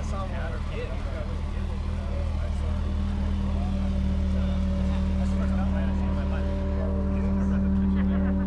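A vehicle engine running steadily at low revs, a constant hum that grows a little louder toward the end, with people's voices talking over it in the first few seconds.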